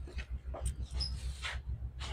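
A few faint, short animal calls over a low steady hum, including a brief high thin note about a second in.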